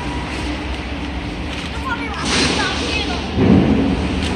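Steady low rumble with brief faint children's voices midway, and a dull thump about three and a half seconds in as a child clambers up onto the old couch's frame.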